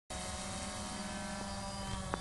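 DJI Phantom 2 quadcopter hovering, its four propellers and motors giving a steady buzz at one unchanging pitch.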